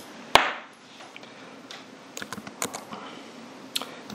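One sharp click about a third of a second in, then a few lighter clicks and taps near the middle and end, over a faint steady room hiss.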